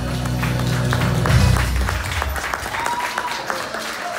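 Audience applauding as the last low chord of the backing music fades out about halfway through.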